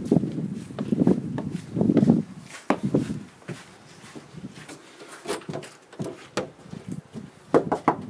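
Irregular scuffs and knocks, louder over the first three seconds, then fainter scattered clicks.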